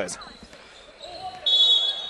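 A basketball shoe squeaks sharply on the hardwood court about one and a half seconds in, a high squeal lasting about half a second, over low arena noise.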